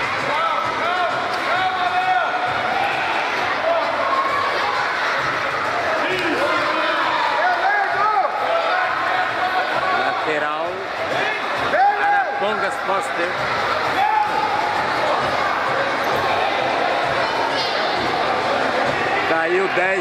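A futsal ball being kicked and bouncing on a hard indoor court floor, with the voices of players and spectators all through, in a large sports hall.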